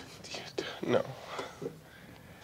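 Quiet speech: a voice saying "no" about a second in.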